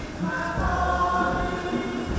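Church choir singing a hymn, with a low instrumental accompaniment underneath.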